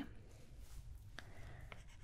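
Faint pen writing on paper, a soft scratching with a couple of light ticks.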